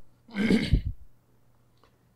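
A man clearing his throat once, a short rough burst, during a pause in his speech.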